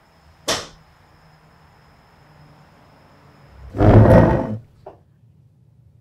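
Horror film sound effects: a short, sharp whoosh about half a second in, then a loud, deep burst lasting nearly a second around four seconds in.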